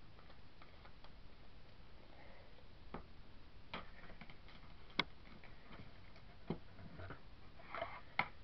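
Faint, irregular clicks and small knocks of craft items being handled on a cluttered table. The sharpest click comes about five seconds in.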